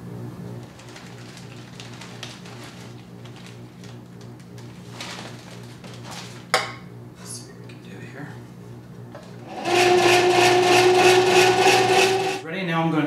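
Electric ice cream maker churning with a steady motor hum, and a single sharp click about six and a half seconds in. Near the end, a louder musical passage with two held tones and a steady pulse starts over it.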